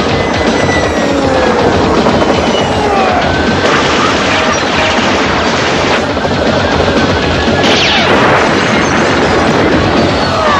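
Cartoon action soundtrack: music under a dense, steady din, with laser-blast and impact effects. The strongest hits come about four seconds in and about eight seconds in.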